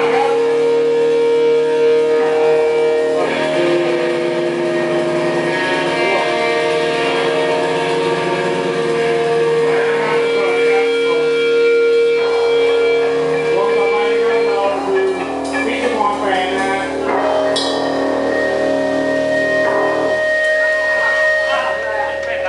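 Live band playing, led by guitars holding long sustained notes and chords that change every few seconds, with a busier strummed passage about two-thirds of the way through.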